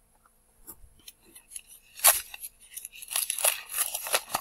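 Newspaper wrapping crinkling and rustling as it is pulled open by hand. A few faint ticks come first, then a sharp crackle about two seconds in, then steady rustling near the end.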